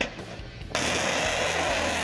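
S-400 surface-to-air missile launching: the rocket motor's loud, steady rushing noise starts abruptly under a second in and holds, over a low music bed.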